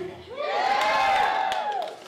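An audience member whooping a long, high-pitched "wooo" cheer in answer to a question from the stage, held for about a second and a half.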